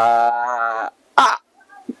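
A man's voice drawing out one long, held vowel for about a second, falling slightly in pitch at the end, followed by a short syllable.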